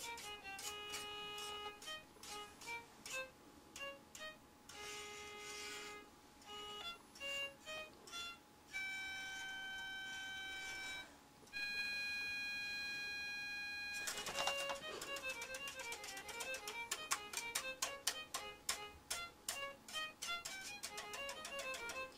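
Battery-powered toy violin playing its built-in electronic melody: a tinny tune of short, clipped notes, two long held tones in the middle, then a fast run of quick notes.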